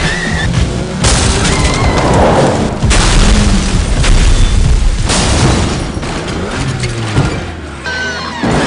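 Movie car-chase and crash sound effects: loud booming impacts and vehicle noise over film score music. The sound jumps abruptly to a new scene about a second in, near three seconds and near five seconds.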